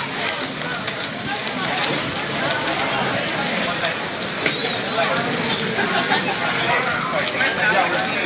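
Hanging strands of metallic beads clinking and rattling together in a dense, rain-like crackle as a child pushes through and handles them.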